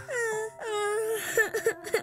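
A young boy crying: two long falling wails, then short broken sobs near the end.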